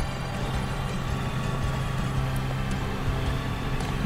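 A machine running with a steady low hum and faint higher steady whine lines above it.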